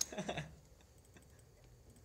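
A voice trails off in the first half-second, then faint computer keyboard typing: a few scattered key clicks.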